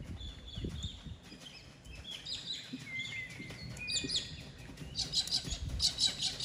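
Small birds chirping: a string of short high whistled notes and quick pitch glides, growing busier near the end.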